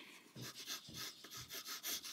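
Graphite pencil sketching on paper: a quick series of short, faint scratching strokes.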